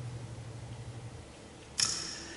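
A pause at a microphone: a steady low hum that stops about a second in, then near the end a sudden short, hissy noise that dies away quickly.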